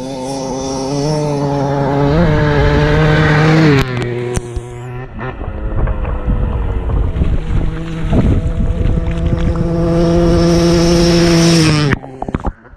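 Dirt bike engine held at high revs while riding through shallow water, with water splashing and spraying around it. The revs rise about two seconds in and ease off near four seconds, then hold steady again before cutting off suddenly at the end.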